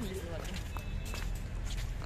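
Footsteps of people walking on a paved path, with faint voices in between.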